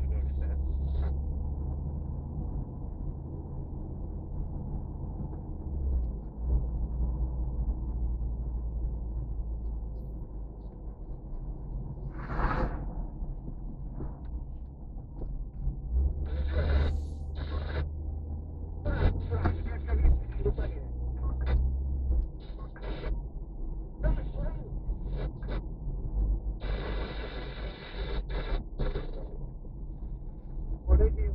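Low engine and road rumble heard from inside a car cabin while driving slowly on a rough concrete road, stepping up and down a few times, with scattered short louder noises over it and a longer noisy stretch near the end.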